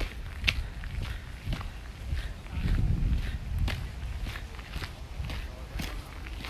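Footsteps of someone walking along a hillside trail through brush, about one step a second, over a low rumble.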